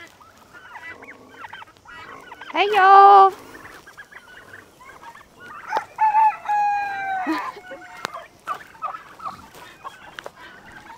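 A mixed flock of farmyard poultry calling: many short clucks and peeps, with a loud call about three seconds in and a longer, held call about six seconds in.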